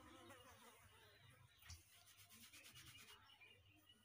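Faint rubbing and rasping of hands and a comb working through long hair, with a quick run of fine ticks, about ten a second, a little past halfway.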